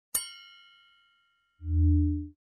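A bell-like ding sound effect, struck once and ringing out over more than a second. Near the end comes a short, louder low tone lasting under a second.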